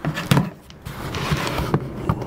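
A knife slitting the packing tape along the seam of a cardboard box: a couple of sharp knocks, then a steady scraping rasp as the blade runs along the tape.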